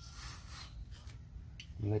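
Quiet steady background noise with a faint hiss in the first half-second and a small click shortly before a man starts to speak at the end.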